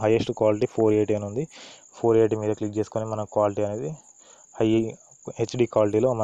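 A man talking, with a steady high-pitched whine running unbroken underneath.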